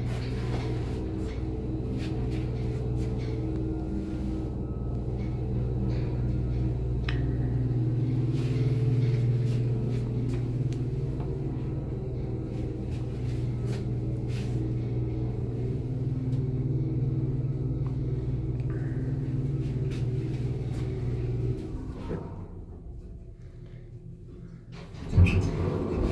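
Machinery of a 1978 SÛR SuperSûr traction elevator heard from inside the car as it travels down: a steady hum with several steady tones that dies away about 21 seconds in as the car stops. Near the end, a sudden loud clunk as the landing door is opened.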